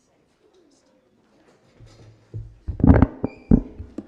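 Microphone on a PA system being handled: a low hum comes up about two seconds in, then several loud bumps and knocks from the mic being touched and adjusted, with a brief thin high tone among them.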